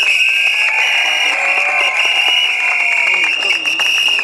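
A crowd clapping and cheering, with a loud, steady, shrill whistle-like tone held over it for about four seconds, which cuts off suddenly at the end.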